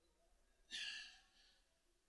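A man's single breathy exhale, like a sigh, about a second in, picked up close by a handheld microphone against near silence.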